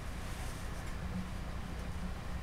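Steady low electrical hum of room tone, with faint soft rustles from hands handling a clay figure.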